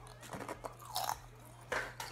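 Kettle-style potato chips crunching as they are bitten and chewed, in a few short crunches spread over two seconds.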